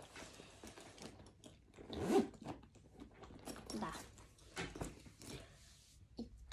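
Handling noise from a pink handbag being moved about and put aside: a run of short rustling, scraping rasps, with a louder cluster about two seconds in.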